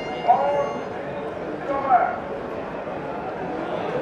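Steady background noise of a stadium crowd, with two short shouts from voices in the crowd: one just after the start and one about two seconds in.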